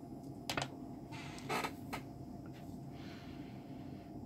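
Faint clicks and rustling of test-lead alligator clips being clipped onto a length of 12-gauge wire and the leads handled, with a sharp click about half a second in and a louder rustle around a second and a half. A steady low hum runs underneath.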